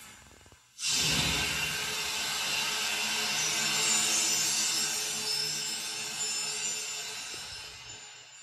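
A film sound effect from a TV: a sudden loud rushing, hissing burst about a second in, with a faint low hum beneath it, fading slowly away.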